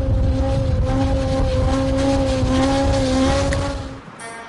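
Suzuki GSX-R 750 motorcycle's inline-four engine held at steady high revs, one sustained note that rises slightly midway, over a heavy low rumble.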